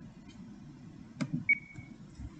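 Faint room noise with two soft taps a little past a second in, followed at once by a short high ringing ping that fades quickly, the loudest sound.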